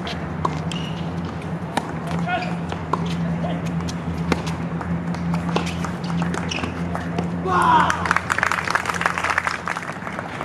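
Tennis rally: sharp racket-on-ball hits about every second or so, with voices around the court. Near the end comes a louder burst of shouting and clapping from the spectators.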